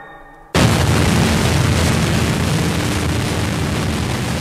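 The tail of a rock track dies away. About half a second in, a loud, dense rush of distorted noise with a heavy bass end starts abruptly and holds steady, the opening of the next track on the record.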